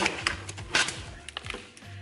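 Foil packaging pouch rustling and a cardboard box being handled, giving a few irregular sharp clicks and taps, with quiet music underneath.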